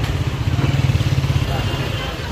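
A motorcycle engine running close by, with the babble of a busy crowd of voices around it.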